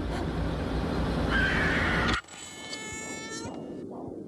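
Trailer sound effects: a loud buzzing rumble with a rising whine that cuts off abruptly about two seconds in, followed by a short ringing tone that fades, then a softer pulsing sound.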